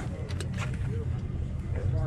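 Indistinct voices talking over a steady low rumble.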